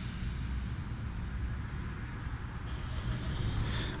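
Steady outdoor background noise: a low rumble with a faint hiss, from distant road traffic, rising slightly near the end.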